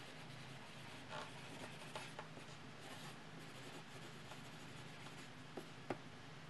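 Felt-tip marker writing in cursive on paper: faint scratchy pen strokes, ending with two light taps of the tip on the paper shortly before the end.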